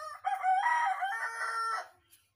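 A rooster crowing: one loud call lasting nearly two seconds.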